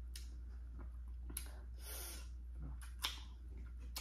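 Faint eating sounds at the table: a few soft clicks from the mouth and hands handling seafood, with a short rustle about two seconds in, over a low steady hum.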